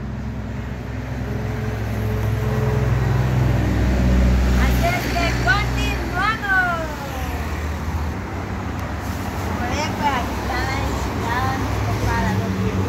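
Steady low hum of a motor vehicle running nearby, swelling a few seconds in and easing off about five seconds in. Over it, a woman's voice makes wordless sliding calls that glide up and down in pitch around the middle and again near the end.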